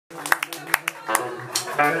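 Live band holding a sustained chord on electric guitar and keyboard, with about five sharp hits in the first second or so. A man's voice calls "yeah" near the end.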